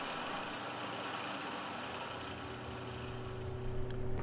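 Quiet, steady hum and hiss of shop machinery running, with no cutting strokes. A lower steady hum comes in near the end.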